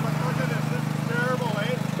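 Pickup truck's engine idling close by, a steady low hum with a fast, even pulse, with faint voices behind it.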